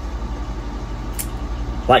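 A steady low mechanical hum with a fast, even pulse, like a motor or engine running nearby.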